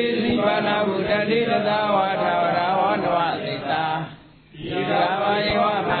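Buddhist chanting in Pali: a continuous, even recitation that breaks briefly for a breath about four seconds in, then goes on.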